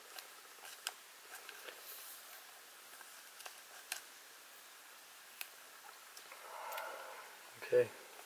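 Faint crinkle and scattered light ticks of a thin clear plastic card sleeve being handled as a trading card is slid into it.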